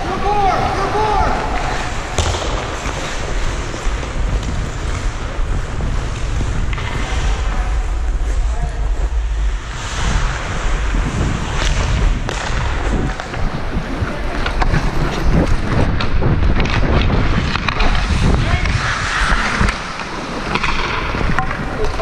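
Ice hockey skate blades scraping and carving across the ice, with wind rumble on the body-worn camera's microphone. Sharp clacks of sticks on puck and ice come throughout.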